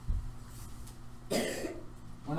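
A person coughs once, a short burst about a second and a half in, after a low thump near the start.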